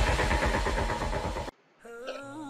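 Channel logo intro sound effect: a loud, pulsing rumble fading from its peak, which cuts off suddenly about one and a half seconds in. Faint steady tones follow near the end.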